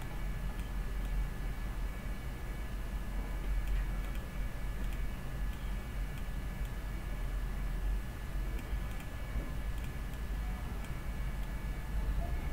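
Steady low electrical hum with a faint steady whine above it, a background of recording noise, broken by scattered soft computer mouse clicks.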